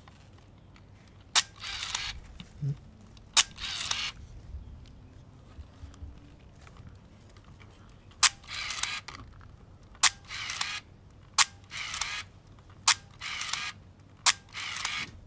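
Hanimex 35 MAF compact film camera's shutter clicking, each click followed by a short rasp of the film advance being wound on, six times over, with a pause of a few seconds after the second. The shutter still fires, though a part has come loose from it.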